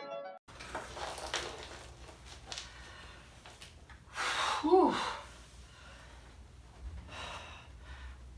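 Music cuts off half a second in, leaving room tone with faint rustles and clicks. About four seconds in a man lets out a loud, breathy sigh that falls in pitch.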